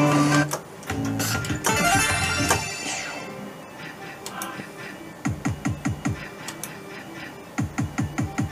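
Merkur Rising Liner slot machine's electronic win sounds: a held synth chord for the three sevens on a win line, then a bright cascade of tones that fades away. Later come runs of rapid falling blips as the reels spin again.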